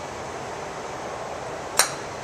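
Steady background noise of an indoor driving range, then, near the end, a single sharp crack of a golf club striking a ball.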